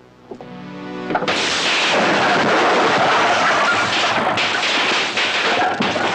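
An electrical short circuit: a hum rising for about a second, then loud, continuous crackling and popping as sparks shower out.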